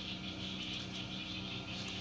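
Faint, steady high-pitched drone of an insect chorus, even throughout with no separate calls standing out.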